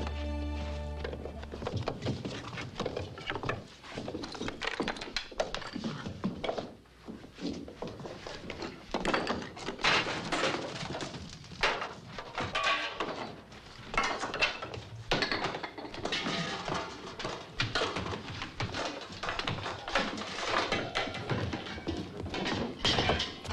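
Film soundtrack music: a held chord ends about a second in, then a long run of irregular thuds and knocks continues with the music.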